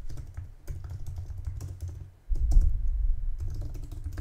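Typing on a computer keyboard: a quick, uneven run of key clicks as a SQL command is entered. A steady low hum lies under it, and a low thump comes a little past halfway.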